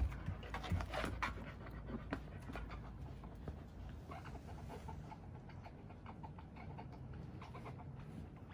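An Akita dog panting steadily, with light clicks and taps scattered through the first three seconds or so.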